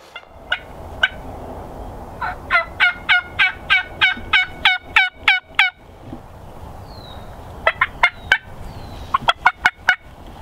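Turkey yelping: a steady series of about a dozen evenly spaced notes, each dropping in pitch, followed near the end by two shorter, quicker runs of notes.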